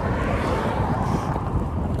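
Headwind buffeting the microphone of a bicycle rider, a steady, fairly loud low rumble.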